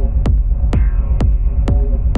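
Deep, minimal techno from a live hardware synth and drum-machine setup. A steady four-on-the-floor kick lands about twice a second over a low droning bass, with brief synth notes in between.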